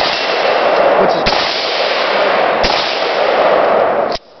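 Zastava M70B AK-pattern rifle (7.62×39 mm) fired in slow aimed single shots, about one every second and a half, with loud echo carrying on between shots. The distant clang of bullets striking a steel I-beam target rings in among the shots.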